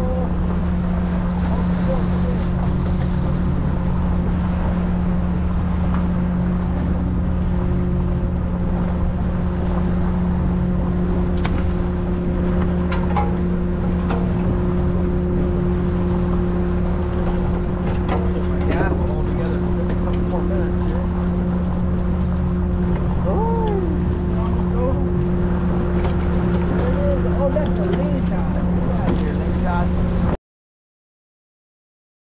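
A boat's engine running steadily at constant revs, with water washing past the hull. A few brief knocks come around the middle.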